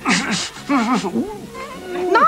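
A cartoon character's wordless vocal cries: several short yelps whose pitch slides up and down, after a brief breathy burst at the start.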